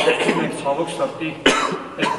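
A man's single short cough about one and a half seconds in, with his speaking voice around it.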